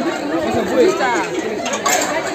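Several people talking at once: overlapping chatter of voices outdoors.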